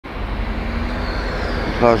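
Steady city street traffic noise, a low rumble with a faint steady hum, and a man's voice starting just before the end.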